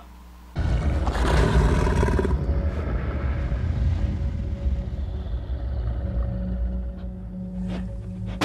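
Horror film soundtrack: a loud, low rumbling drone with sustained tones, cutting in suddenly about half a second in.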